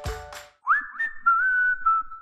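A short whistled phrase: two quick upward slides, then a long held note with a slight waver, cut off just after the end.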